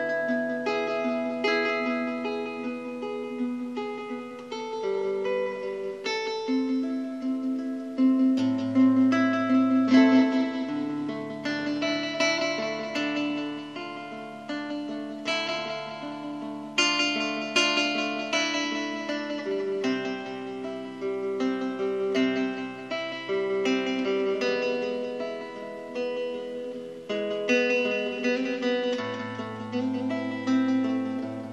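Solo nylon-string classical guitar played fingerstyle in A minor: a plucked melody over held bass notes, each note starting sharply and then fading.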